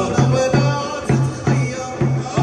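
Live Moroccan folk music: a large drum beaten with a stick in a steady rhythm, about two to three strokes a second, with a man singing over it.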